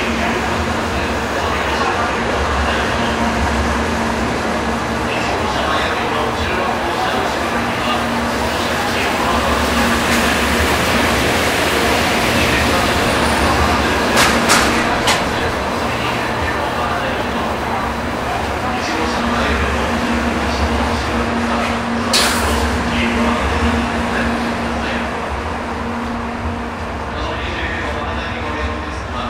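Shinkansen 700 series train rolling past a station platform: a steady rumble of wheels and running gear with a faint hum. A few sharp clicks come about halfway through and again later.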